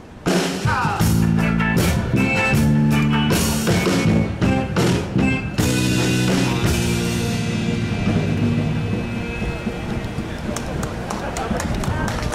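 A live band of accordion, guitars and drum kit playing. The busy strumming and drum hits of the first half give way to a held final chord that slowly fades out as the song ends.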